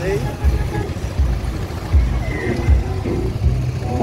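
Wind buffeting the microphone on a moving motorcycle, in irregular low gusts, over the bike's engine and road noise.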